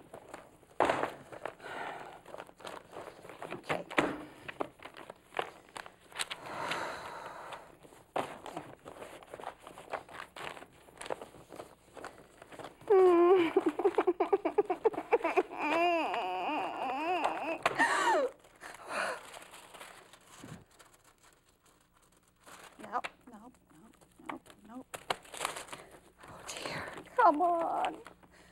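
Papers and envelopes rustling and crinkling as they are rifled through by hand in a search. About halfway in, a woman's voice breaks into a loud, wavering crying wail for about five seconds, with fainter sobbing sounds near the end.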